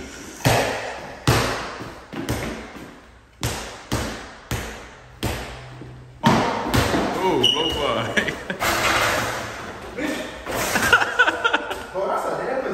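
Mini basketball being dribbled on a hard floor, one sharp bounce about every second, each echoing in the large room. About halfway through it gives way to a busier stretch of scuffling feet and squeaks, with more bounces near the end.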